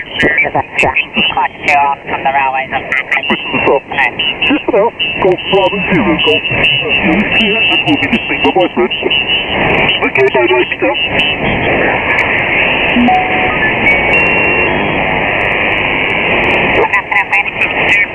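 Lower-sideband receiver audio from a Kenwood TS-590 HF transceiver on the 40 m band being tuned across busy frequencies. It gives garbled, overlapping voices of other stations and band noise, with a few short whistles and sliding tones in the second half.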